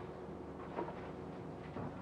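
Steady low drone of a fishing boat's engine running on deck, even in level.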